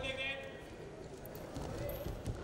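Live arena sound of a wrestling bout: a voice shouts briefly at the start, over irregular thuds and scuffs of feet on the wrestling mat.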